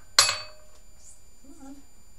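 A single sharp clink of a metal tablespoon against a small bowl, ringing briefly and dying away.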